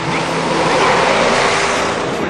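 Snowplow truck passing close with its blade throwing snow: a rushing swell of engine and spraying snow that peaks about a second in, over background guitar music.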